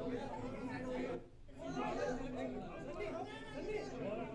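Indistinct chatter of a crowd of people talking over one another, with a brief lull about a second in.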